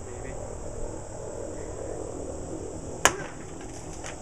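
A single sharp whack about three seconds in: a swung curved farm blade striking and cutting through a plastic gallon jug of water.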